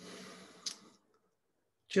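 A soft breath-like hiss with a single sharp click about two-thirds of a second in, then a woman's voice starting right at the end.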